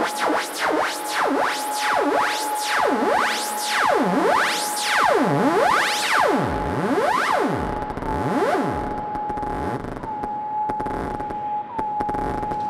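Live electronic synthesizer music: a steady high tone is held while a second voice sweeps up and down in pitch over and over, each sweep slower and deeper than the last. About eight seconds in the sweeps stop, leaving the held tone with a few brief bends near the end.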